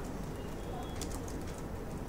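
Computer keyboard typing: a few scattered keystroke clicks, the clearest about a second in, over a steady low background hum.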